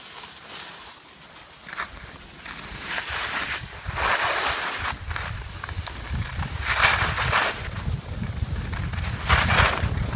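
Skis scraping over hard-packed snow in a series of turns, the scrape swelling every few seconds, with wind rumbling on the microphone from about two seconds in as the skier gathers speed.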